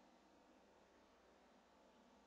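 Near silence: a faint, steady background hiss with no distinct sounds.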